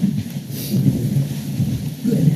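Low rumbling and shuffling as several people sit down in office chairs around a meeting table, with chairs rolling and papers moving close to the table microphones.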